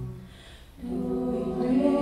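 A cappella vocal group singing in close harmony: a held chord fades at the start, and after a short gap the voices come back in about a second in with a new sustained chord that swells.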